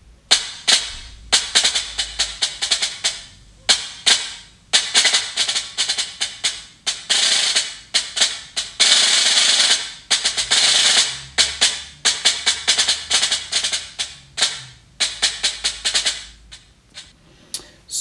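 Snare drum solo: quick, sharp strokes and accents broken by sustained rolls, the longest about nine seconds in.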